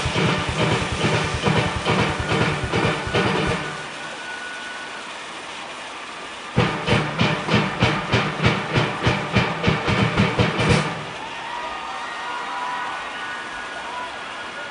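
A steel orchestra of pans playing a fast, driving, beat-heavy passage with its rhythm section. It breaks off twice into a quieter, steady hiss, the first break about four seconds in and the second a little before the end.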